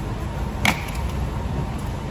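Steady low rumble of an idling motor coach, with one short sharp swish about two-thirds of a second in that sweeps down in pitch.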